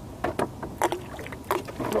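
Boilies thrown by hand from a rowboat while baiting up: a scattered series of about five short, sharp plops and clicks as the baits land on the water.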